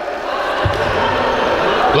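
A handball bouncing on a wooden sports-hall floor, a dull thud about two-thirds of a second in, over the echoing noise of the hall.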